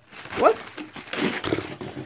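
Paper and plastic packaging rustling and crinkling as a hand rummages through a cardboard box, in irregular scrapes. A short rising exclamation of "what?" about half a second in is the loudest sound.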